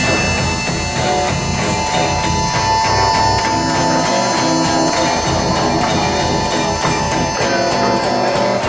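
Instrumental passage of a rock song: guitar playing, with one long held high note over it.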